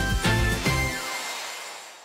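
Upbeat theme music for a TV segment, closing on a final chord that rings out and fades away over the last second.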